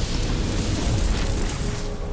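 Cinematic logo-intro sound design: a loud, dense rumbling fire-and-explosion effect mixed with music. Near the end it eases and a sustained ringing tone comes in.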